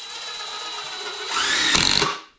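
Cordless drill driving a screw into 2x4 lumber: a steady motor whine that grows louder for the last half second or so.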